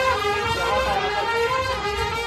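Marching brass band of trumpets and saxophones playing a melody in held notes that step from pitch to pitch.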